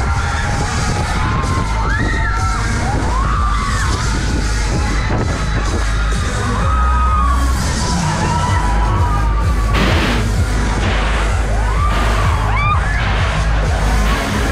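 Riders on a spinning Dance Jumper fairground ride screaming and yelling in many short rising-and-falling cries, over loud ride music with a heavy bass. A brief burst of noise comes about ten seconds in.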